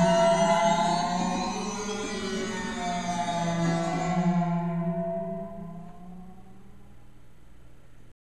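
Alesis QS8 synthesizer playing its 'Water' preset: a sustained pad over a low drone, with tones that sweep slowly up and down. Its bright top dies away about halfway through, and the whole sound fades out toward the end as the notes are released.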